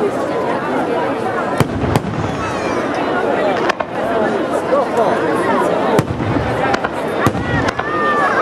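Aerial fireworks bursting overhead: about six sharp bangs at irregular intervals, over the steady chatter of many people.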